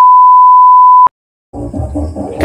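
A loud, steady electronic beep: one pure, unwavering tone like a censor bleep, laid over a title card. It cuts off sharply about a second in, followed by a short silence.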